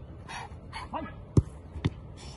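Goalkeeper training drill: a few short bursts of sound, then two sharp thuds about half a second apart, the first the louder, from a football being kicked and the goalkeeper diving on grass to save it.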